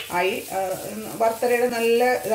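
Speech over grated coconut sizzling as it roasts in hot coconut oil in a frying pan.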